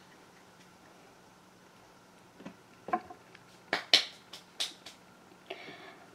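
Quiet room tone, then from about halfway through an irregular run of about seven short, sharp clicks and taps from small hard objects being handled.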